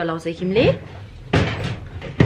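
A voice makes a brief sliding, rising sound at the start, then a short noisy knock comes a little over a second in, like furniture or a cupboard being bumped or handled.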